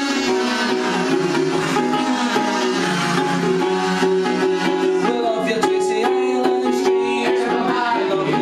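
Amateur music from a ukulele, with a sustained melody line carried over it.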